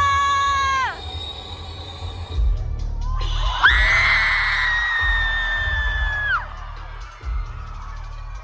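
A concert crowd screaming over deep bass music from the venue's speakers. One shrill held scream cuts off under a second in, and a second long, high scream sweeps up about three and a half seconds in, holds, and stops sharply about three seconds later.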